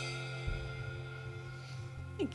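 A live band's last chord (acoustic guitar, electric bass and keyboard) ringing out and slowly fading, with a low thump about half a second in.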